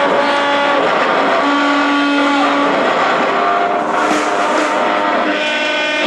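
Live rock band music led by a loud electric guitar playing long held notes that shift in pitch every second or so.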